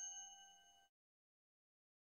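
The last notes of a bright bell-like outro chime ringing on and fading away, cut off before the one-second mark, followed by complete silence.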